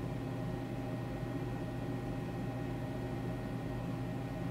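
Steady low hum and hiss of room tone, unchanging, with no other sound.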